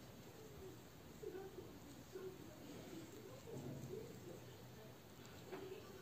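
Near silence: faint room tone, with a few faint, low, wavering sounds and a soft click near the end.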